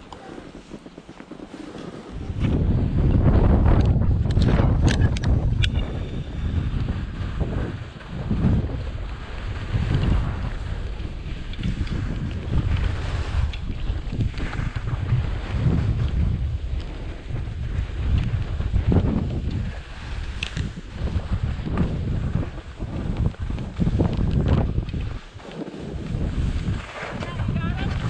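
Wind buffeting a GoPro's microphone while skiing downhill, with the hiss and scrape of skis on snow. It starts about two seconds in and swells and dips every couple of seconds, dropping away briefly near the end.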